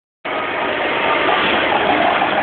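Mitsubishi Mirage hatchback's engine idling steadily under a broad hiss, starting a moment in.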